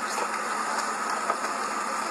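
A vehicle engine idling steadily, with a thin steady whine above it and a couple of faint clicks.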